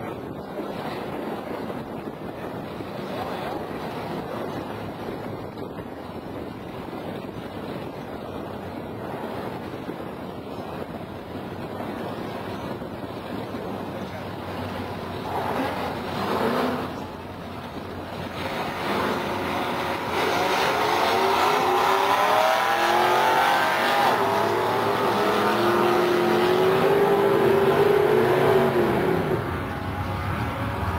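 Two drag-racing vehicles, a car and a pickup truck, idling at the starting line, with a short rev about halfway through. Near two-thirds of the way in they launch at full throttle; the engines get much louder, their pitch climbing and dropping as they shift up through the gears, and ease off just before the end.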